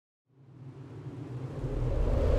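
Intro sound effect: after a brief silence, a low rumble fades in and swells steadily louder.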